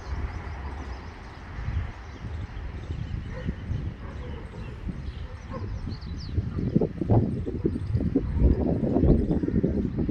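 Wind rumbling and buffeting on a phone's microphone outdoors, gustier and louder from about seven seconds in, with one brief high chirp just before.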